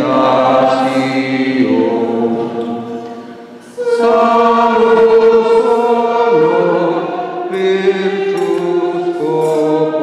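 Group of voices singing a hymn in long held notes, with a short break between phrases just before four seconds in.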